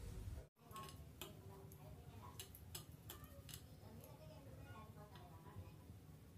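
Near silence: faint room tone with a few soft, irregular clicks and ticks.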